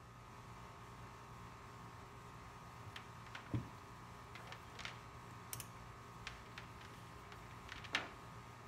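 Scattered small clicks and light knocks of multimeter test leads and probes being handled on a workbench, the loudest a dull knock about three and a half seconds in. A faint steady hum lies underneath.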